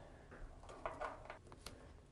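Faint handling noises: a few light ticks and rustles of a cord being tied onto old wires.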